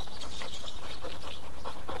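A large dog panting steadily.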